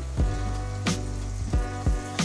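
Background music with steady held low notes and a few sharp beats, over chilli oil sizzling in a frying pan.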